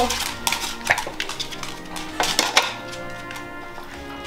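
Stainless steel dog bowl clinking and knocking against a raised metal feeder stand as it is set in place: several short, sharp clinks. Background music plays underneath.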